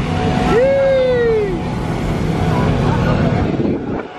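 A person's drawn-out call, about a second long near the start, rising and then falling in pitch, over a steady low rumble of vehicle engines.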